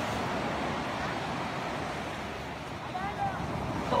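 Steady beach surf with wind buffeting the microphone, and a faint voice about three seconds in.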